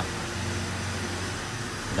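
Peugeot 206's TU3 petrol engine idling steadily, a low even hum with the fan belt running quietly now that its loose tensioner has been repaired.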